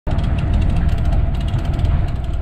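Fishing reel clicking steadily as a hooked fish pulls line off the spool, over a heavy low rumble of wind and boat.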